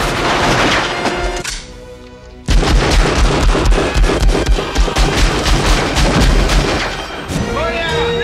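Film gunfire: shots in the first second and a half, then after a short lull a long, rapid burst of automatic fire with heavy low thuds lasting several seconds, over the film's music score.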